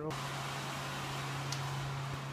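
Steady low hum with an even hiss, as of a building's ventilation fan running, with a faint tick about one and a half seconds in.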